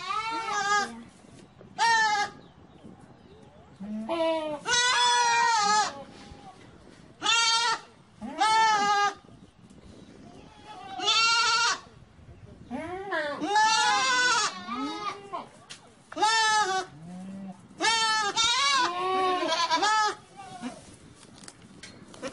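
Goats bleating again and again: about ten quavering bleats, some short and some drawn out over a second, with short pauses between them.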